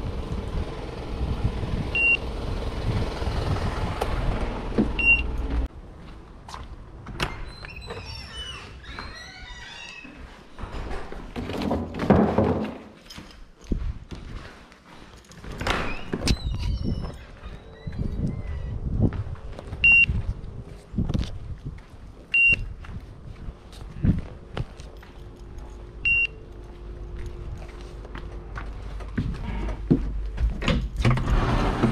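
Wind on the microphone for the first few seconds, then a string of door and handling thuds and knocks, the loudest about twelve and sixteen seconds in. Five short high beeps sound at intervals.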